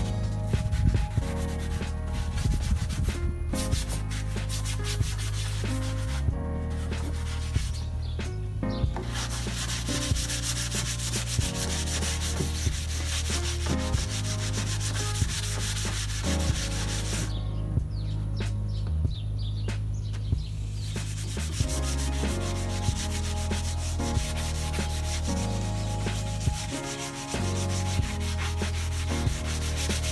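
Hand-held pad rubbing over the finished wood of a bassinet in repeated strokes, scuffing the surface before it is painted. The rubbing pauses now and then, once for a few seconds past the middle, over background music with a stepping bass line.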